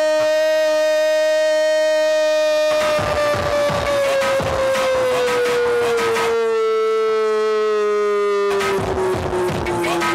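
A Brazilian radio football narrator's long held "gooool" cry, one unbroken note sliding slowly down in pitch. Music with a beat comes in underneath it about three seconds in.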